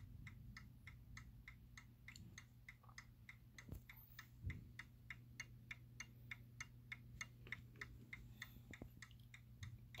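Seth Thomas Fieldston-IW mantel clock movement ticking faintly, a quick, even beat of about four to five ticks a second. A couple of soft knocks fall near the middle.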